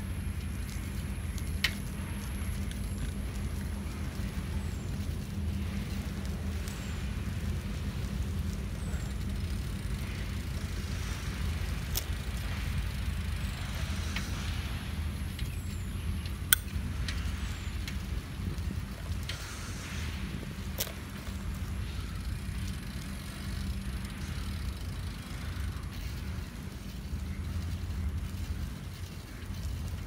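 Steady low rumble of a moving bicycle: tyres rolling on a paved path and wind on the microphone, broken by a few sharp clicks, the loudest about sixteen seconds in.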